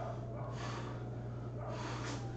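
A man breathing hard and forcefully through squats done holding a weight, two breaths about a second apart, each timed with a rep. A steady low hum runs underneath.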